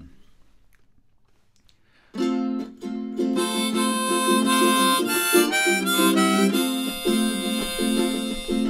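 Near quiet for about two seconds, then a harmonica and a strummed ukulele start together, playing the instrumental intro of a folk song, with the harmonica carrying the melody.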